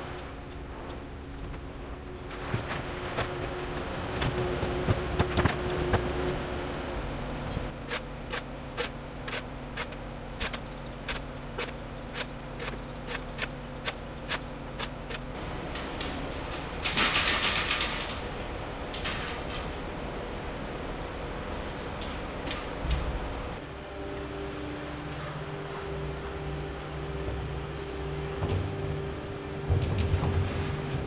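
Kubota skid steer loader's diesel engine running steadily as it works in the barn, its note shifting about three-quarters of the way through. A run of regular clicks, about two a second, sounds in the middle, followed a little later by a short, loud hiss.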